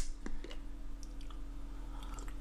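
A few faint clicks from a mug being picked up for a drink, over a steady low electrical hum.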